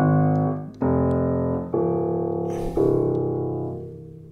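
Welmar A4 upright piano: four chords struck about a second apart, each left to ring and die away, the last fading out near the end.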